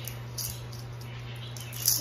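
A pause in talk filled by a steady low hum, with a few faint small clicks about half a second in and a short sharp hiss near the end.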